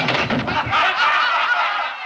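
A roomful of people bursting into loud laughter as a man tumbles off his chair onto the floor, in an old film soundtrack.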